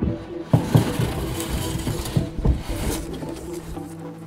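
Sound effect of a window being forced and opened: an irregular run of rattling knocks and scrapes, loudest about half a second in and again around two and a half seconds in, over steady background music.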